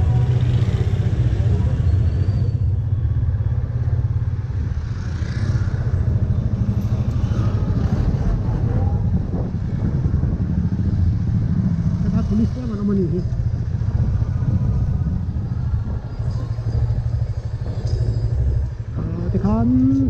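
Motorcycle engine running steadily while riding along a street, a continuous low rumble. Brief voices are heard about twelve seconds in and again near the end.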